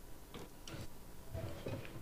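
A few light, irregular knocks and footfalls of people moving about a meeting room, with a faint low hum underneath.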